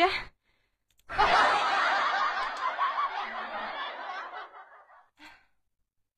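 A burst of laughter that starts abruptly about a second in, loudest at its onset, and fades away over about four seconds.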